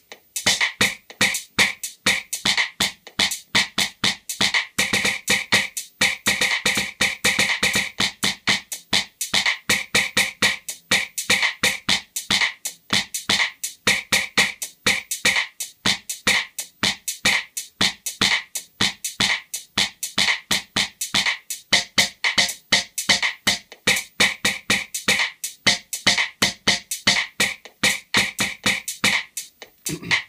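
Electronic drum sounds from the Teenage Engineering OP-1's drum kit, triggered by drumstick strikes on a Tap piezo sensor through the OPLAB. They play a fast, steady beat of about four to five hits a second, and the drum sound varies as the Flip tilt sensor changes which note is triggered.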